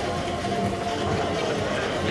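Steady background noise of a large room: a low, even hum with indistinct voices underneath; no ball strike is heard.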